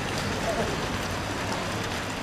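A steady, even hiss of open-air background noise, with a faint voice from the crowd about half a second in.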